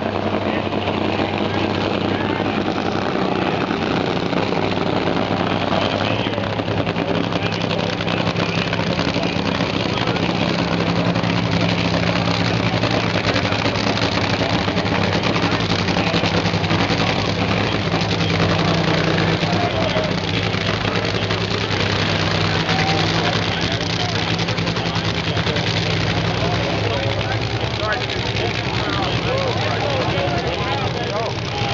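Drag-racing engines idling steadily, with no full-throttle run, under crowd chatter.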